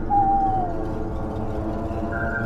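A single owl hoot just after the start, one drawn-out call sliding slightly down in pitch, over a low steady drone.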